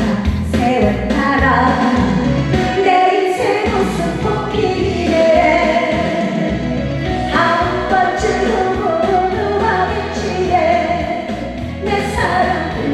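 A woman singing a Korean trot song into a microphone over a backing track with a steady beat.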